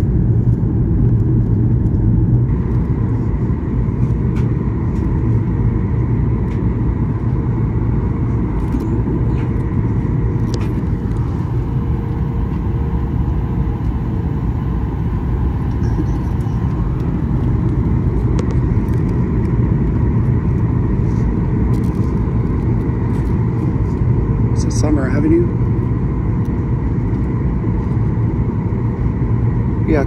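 Steady, low cabin roar of a Boeing 737 MAX 8 airliner in flight, the engine and airflow noise heard from a window seat.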